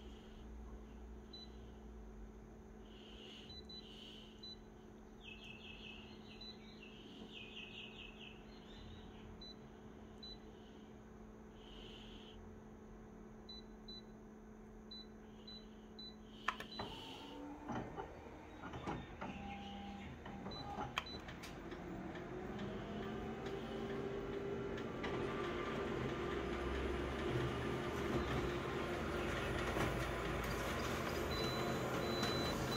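Konica Minolta multifunction copier: short touchscreen key beeps over its steady idle hum, then about halfway a click as the copy job starts, followed by clicks, a rising motor whine and a running noise that grows louder as the machine feeds and copies the page.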